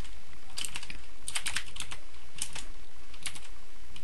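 Typing on a computer keyboard, in about five short runs of a few keystrokes each with pauses between, over a steady low hum.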